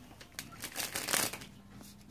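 A deck of playing cards being shuffled by hand: a quick run of crisp card snaps, loudest just after a second in.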